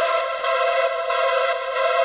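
U-He Diva software synth playing a supersaw lead: a stack of detuned sawtooth voices from its digital oscillator, with delay and plate reverb on it. A new chord comes in just after the start and is held steady.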